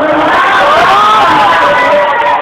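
Mushaira audience cheering and calling out in appreciation of the recited verse, many voices at once.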